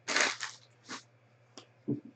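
Trading cards being handled: a short burst of crinkly rustling, a second brief rustle just under a second in, then a soft low knock near the end.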